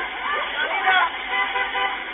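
Raised, indistinct voices shouting at a crash scene. A short, steady car horn sounds over them just past the middle.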